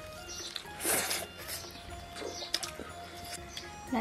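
A person slurping noodles: one loud slurp about a second in, then a few softer ones, over background music.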